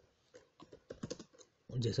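Computer keyboard keys being typed: a quick run of about half a dozen light clicks in just over a second, with a man's voice starting near the end.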